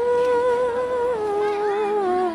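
A person's voice singing or humming long held notes in a slow melody: the pitch steps up at the start, holds, then steps down twice.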